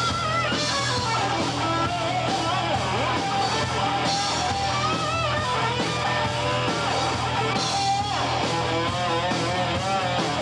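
Rock band playing live: distorted electric guitars, bass and drum kit, with bending lead lines over the steady beat.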